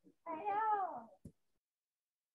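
A woman's drawn-out wordless vocal sound, rising then falling in pitch, followed by a short click.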